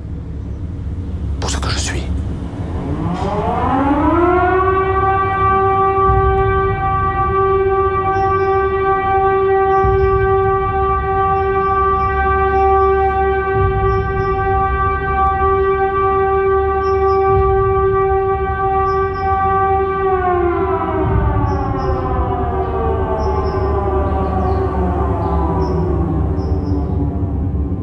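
A siren-like tone climbs in pitch over about two seconds, holds one steady pitch for about fifteen seconds, then slowly falls, over a low rumble. A short sweep sound comes just before it starts, and faint high ticks repeat through the held part.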